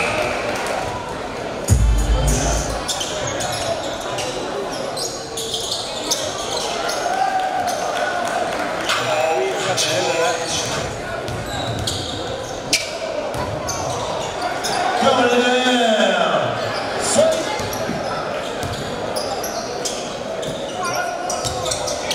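Basketball being dribbled on a hardwood gym court during a game, with players' and spectators' voices around it and a heavy thump about two seconds in.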